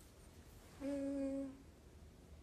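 A woman hums a single closed-mouth "mm" at one steady pitch. It lasts a little under a second, near the middle.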